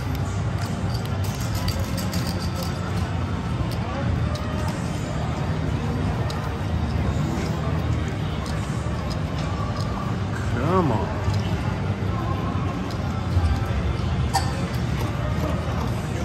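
Casino background: a murmur of voices and music over a steady low hum, with a few faint clicks.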